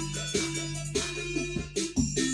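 Music played through Cerwin-Vega SL-12 floor-standing speakers driven by a Denon AVR-X4700H receiver, heard in the room: repeated notes, two or three a second, over a held bass tone.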